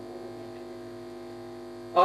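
Steady electrical mains hum through the microphone and sound system, a constant buzz of several even tones that holds level.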